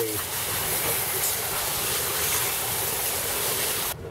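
Water jet from a hand-held hose spray nozzle hitting an alloy car wheel, rinsing off wheel cleaner: a steady hiss that cuts off suddenly just before the end.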